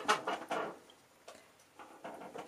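A paintbrush being picked up and handled: a few light clicks and scrapes in the first half second or so, then a couple of faint ticks.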